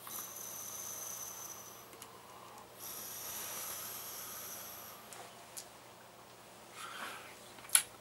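Faint hissing draw on an electronic cigarette's Aqua rebuildable atomizer, fired at 12 watts, taken in two pulls of about two seconds each, then a short breath out near the end.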